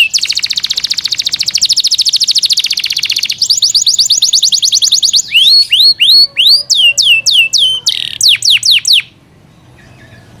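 Yorkshire canary singing. It opens with a very fast trill of high repeated notes for about three seconds, then a second fast trill, then a run of separate swooping whistled notes. The song stops about a second before the end.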